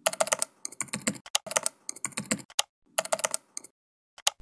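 Typing on a computer keyboard: quick runs of key clicks with short pauses between them, stopping shortly before the end.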